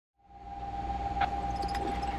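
Steady low hum with a thin, steady high-pitched whine over it, fading in during the first half second; one faint click a little after a second in.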